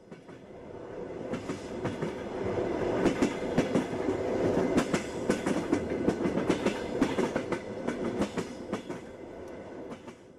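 A railway train running along the track, its wheels clicking over the rail joints; the sound swells up over the first few seconds and fades away near the end.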